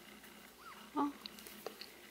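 A soft voice saying a single counted number, "four", about a second in, followed by a few faint small clicks.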